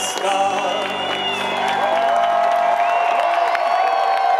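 A live band holds a final chord at the end of a song; its low notes stop about three seconds in. A concert crowd cheers and whoops over it.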